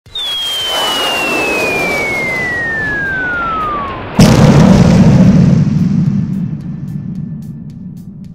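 A single whistle falling steadily in pitch for about four seconds over a hiss, then a sudden loud boom whose deep rumble fades away over the next few seconds: a bomb-drop sound effect.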